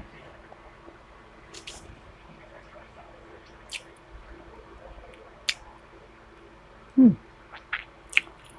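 A person eating soft rice and fish by hand, chewing quietly with a few short wet lip smacks, then a loud falling "hmm" of approval about seven seconds in. A faint steady hum sits under it.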